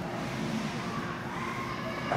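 Ice hockey rink ambience during play: a steady wash of skating and hall noise with a faint constant hum.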